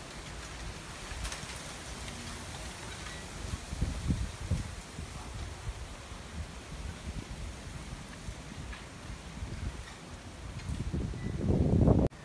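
Wind gusting through palm fronds and bamboo, with wind rumbling on the microphone; one gust swells about four seconds in and a stronger one comes just before the end.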